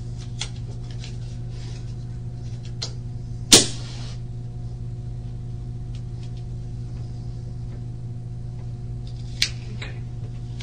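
Steady low hum of a small room, with a sharp click about three and a half seconds in that trails off in a short hiss, and a smaller click near the end.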